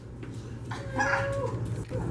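A person's voice in the room giving one short held call at a steady pitch, lasting just under a second, about a second in.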